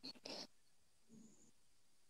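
Near silence: faint room tone, with one brief soft noise at the start.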